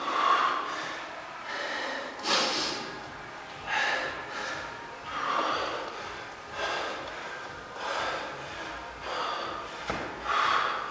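A man breathing hard in loud, heavy gasps about every second and a half, winded from a heavy deadlift workout.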